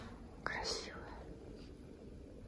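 A soft click, then a brief whisper about half a second in, over faint room tone.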